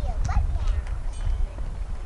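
Wind buffeting the microphone, an uneven low rumble, with one short falling high-pitched call near the start.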